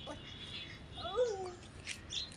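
A toddler's short wordless vocal cry about a second in, rising then falling in pitch.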